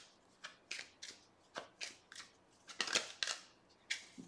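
A deck of cards being shuffled by hand off camera: a quick, irregular run of short papery swishes and slaps, about three a second.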